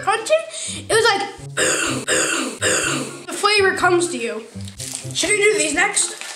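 Children's voices, indistinct and mumbled while they chew wafer biscuits. About a second and a half in comes a breathy, noisy stretch in three pulses.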